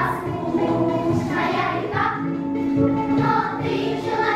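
A girls' children's choir singing in unison, with one long held note about halfway through.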